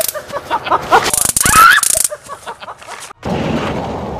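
A person giving short, rising yelps and shrieks, twice in the first two seconds, over a harsh crackling hiss. The sound cuts off sharply a little after three seconds, and a steady noisy outdoor background follows.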